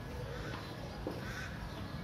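A few short bird calls over a steady background hiss, with a single short click about a second in.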